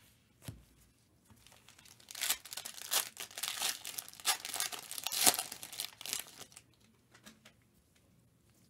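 A foil Panini Prizm trading-card pack being torn open and its wrapper crinkled by gloved hands: a dense crackling for about four seconds, with a sharp rip near the end. A short knock comes just after the start.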